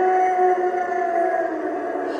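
Animated ghost bride Halloween prop's sound effect from its speaker: one long, eerie held tone that rises slightly and then slowly sags in pitch.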